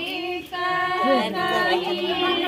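Women singing a traditional wedding folk song together in long held notes, with a brief break about half a second in.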